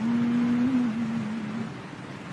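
A man's voice holding the last syllable of a chanted verse line as one long, nearly steady note that trails off about a second and a half in.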